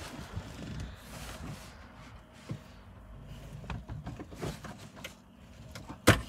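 Faint rustling and a few light clicks as hands work a wiring-harness connector onto the gateway computer behind a plastic trim panel.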